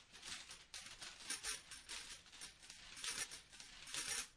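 Metal chain rattling and clanking in quick, irregular, jingling shakes, faint throughout, as of a chain being shaken furiously.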